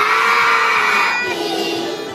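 A group of kindergarten-age children singing in unison. They hold one long note, then drop to a lower held note a little past halfway.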